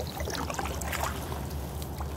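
Water trickling and lapping along the hull of a 17-foot impact-plastic sea kayak gliding through shallow water, over a steady low rumble, with a few faint drips or ticks.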